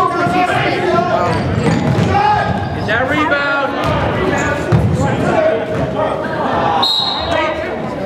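Basketball bouncing on a hardwood gym floor during play, in a large, echoing gym, with spectators' voices throughout. A short, high, steady referee's whistle sounds near the end.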